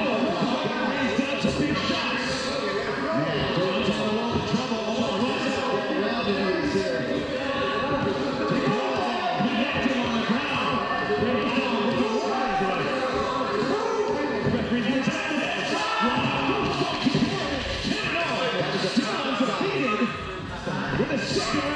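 Several voices talking over one another, with music underneath.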